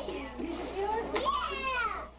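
Young children's high-pitched voices, excited and wordless, with one voice sliding down in pitch over the last half second.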